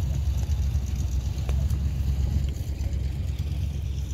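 Wind buffeting the microphone: a steady low rumble that flickers in level, with a few faint ticks over it.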